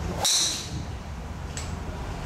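A golf driver striking a teed ball: one sharp, ringing crack about a quarter of a second in, fading within half a second, over a steady low background rumble.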